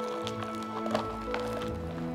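Soft background music with long held notes. Under it, a few faint soft ticks and rustles of hands kneading cooked rice and nuruk in a plastic tub.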